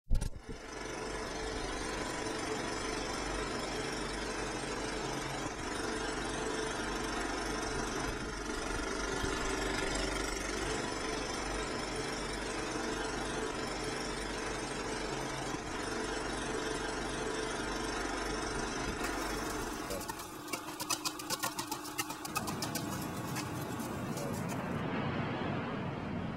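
A steady machine-like running noise over a low hum, turning to a rapid clicking rattle a few seconds before the end, when the low hum stops.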